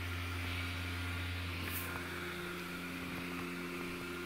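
Airblown inflatable's built-in blower fan running with a steady low hum.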